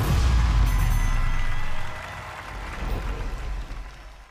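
Booming musical sting for a TV title card: a deep rumble, loudest for the first two seconds, then fading out near the end.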